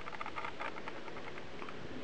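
Low room hiss with many faint, irregular little ticks and rustles, like light handling noise.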